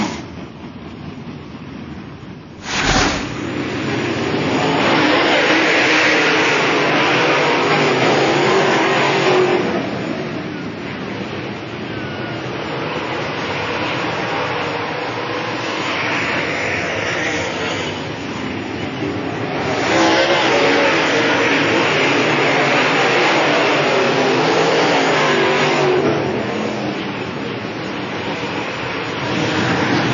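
Dirt late model race cars' V8 engines running hard around a dirt oval. The sound jumps up sharply about three seconds in, then swells and fades in waves as the pack passes.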